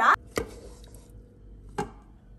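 Two sharp knocks about a second and a half apart: a slotted wooden spatula striking a pan of chicken curry.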